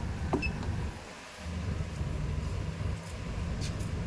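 Car engine idling, heard from inside the cabin, with a couple of clicks from the automatic gear selector being moved out of Park into Reverse.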